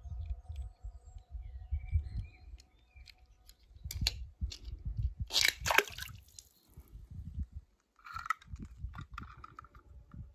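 A small die-cast metal toy car splashing into a swimming pool, the sharpest sounds coming about five and a half seconds in, with low rumbling noise throughout.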